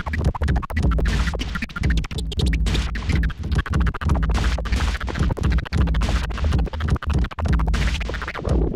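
Turntable scratching: a vinyl record worked back and forth by hand over music with heavy bass, the sound chopped by frequent sudden cuts.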